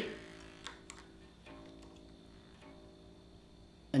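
Unplugged electric bass's open A string ringing as a low sustained note that slowly fades, with a few faint clicks as the tuning peg is handled. The string sits flat and needs tuning up.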